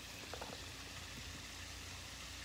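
Faint, steady hiss of running water from a small rocky garden stream, with two or three light clicks about a third of a second in.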